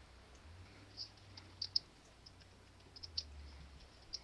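Faint keystrokes on a computer keyboard: a handful of scattered clicks, a couple of them close together.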